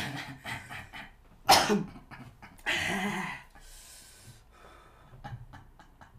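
A man coughing after a mouthful of raw onion: one sharp, loud cough about a second and a half in, then a longer, throatier cough about three seconds in.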